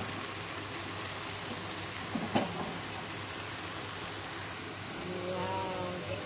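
Chopped greens, onion and tomato sizzling in a frying pan with a steady hiss as they are stirred. A utensil knocks once sharply against the pan about two seconds in.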